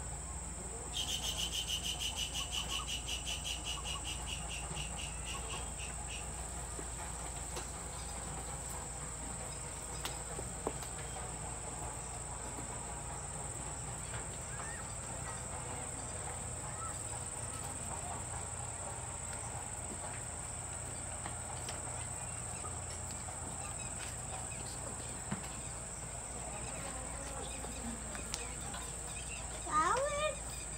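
Insects chirring steadily in a high, even drone, with a louder, rapidly pulsing insect call joining about a second in and fading out around six seconds in. Faint low rumble and a few soft ticks underneath.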